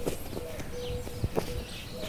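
A football being kicked and bouncing on packed earth: a handful of soft, irregular knocks.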